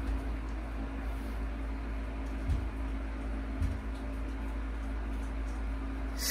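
Steady low electrical hum in a quiet room, with two faint dull thumps about a second apart near the middle, which the listeners take for someone knocking at a door.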